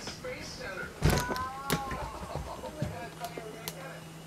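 Wheelchair pushed through a doorway: a loud knock about a second in, then a few lighter clicks and rattles as it rolls on.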